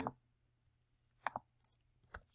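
Near silence broken by a couple of short, faint computer mouse clicks about a second in, then a few fainter ticks: the clicks on an online calculator's on-screen keypad that enter a square root.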